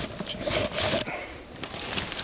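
Rustling and brushing of leaves and clothing against the handheld camera as it is carried through rainforest undergrowth, in two short bursts about half a second and a second in. Behind it, the steady high drone of rainforest insects.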